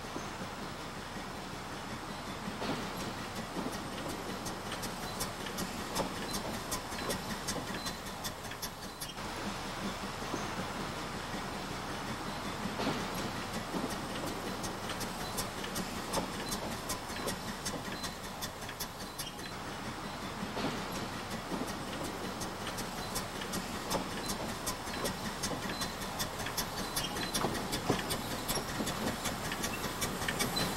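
Narrow-gauge 0-4-0 steam locomotive pulling passenger coaches along the track, with many rapid clicks from the wheels and running gear over a steady running noise, growing louder as the train comes closer.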